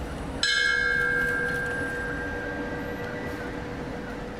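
A bell struck once, about half a second in, then ringing and slowly dying away: a memorial toll sounded in the pause after a victim's name is read.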